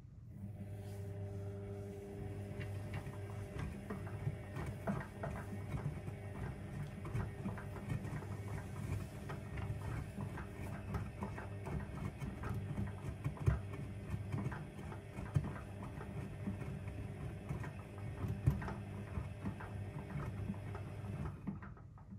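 AEG Öko-Lavamat 6955 Sensorlogic front-loader tumbling a load of whites in the main wash: the drum motor starts, runs with a steady hum while water sloshes and the wet laundry flops inside the drum, then stops after about twenty seconds.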